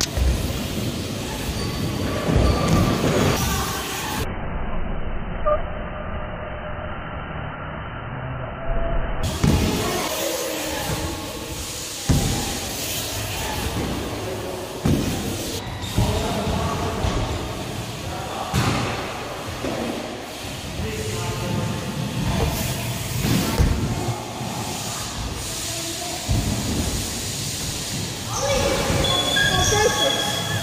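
Skate park sounds: BMX and scooter wheels rolling over the ramps, with a clunk of a landing or impact every few seconds, and voices in the background.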